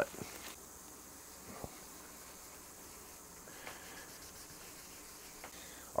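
Faint steady hiss of workshop room tone, with a few light ticks, the plainest about a second and a half in.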